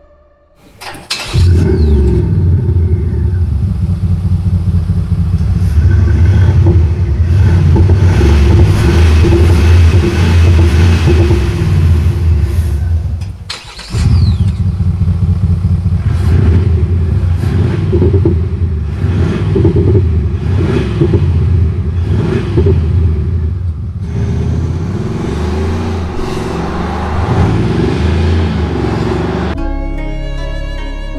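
Mercedes GLE Coupe engine heard from the exhaust end, starting with a loud sudden flare about a second in, then running at a high steady idle. It drops out briefly near the middle, comes straight back, and is then revved repeatedly, the pitch rising and falling with each blip.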